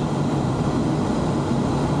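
Steady drone of an ATR 72-600's Pratt & Whitney PW127 turboprop engines and propellers, with airflow noise, heard from inside the cockpit.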